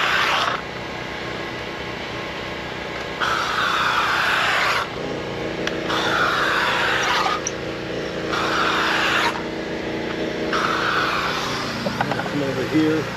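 Upholstery steamer nozzle hissing in about five separate bursts of steam, each a second or so long, as it is worked over a window, with a steady low hum behind.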